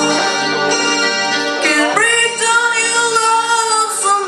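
A young solo singer sings into a handheld microphone over backing music, sliding up about halfway through into a long held, wavering note.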